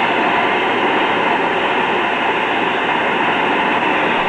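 Propane hand torch burning with a steady, even rushing hiss while its flame melts aluminum repair rod onto a cast aluminum compressor head.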